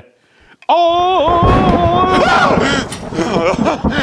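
A man's loud, drawn-out vocal cry, starting a moment in and held at a high pitch for about a second and a half, then breaking into shorter yells. It is a man imitating the voice heard from a well in his spooky story.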